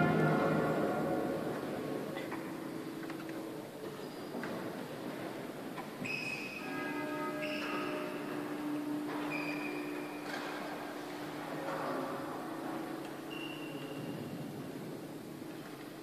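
Music dies away in a large church's echo over the first couple of seconds. After that, a few soft held notes sound on and off, several at once.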